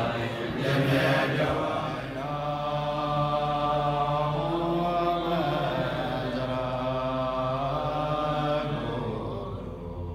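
Tibetan Buddhist chanting in low voices, with long held, slowly shifting notes; it fades somewhat near the end.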